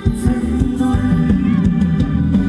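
Live Thai ramwong band music through a loud PA: a steady drum beat over a strong bass line, with melody above.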